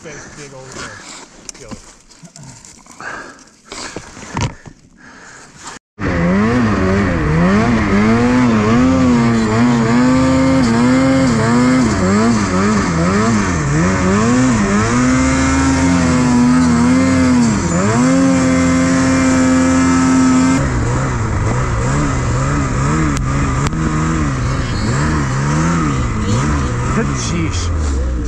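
After about six seconds of quiet knocking, a Ski-Doo Freeride 850 Turbo's two-stroke snowmobile engine starts up loud and revs up and down, holding high for a few seconds before dropping, as the sled pushes and churns through deep, heavy, wet snow.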